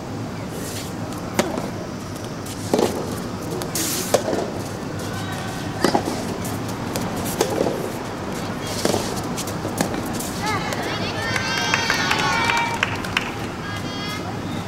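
Soft tennis rally: a soft rubber ball struck back and forth by rackets, a sharp hit about every one and a half seconds. Near the end, high chirping calls come in over the play.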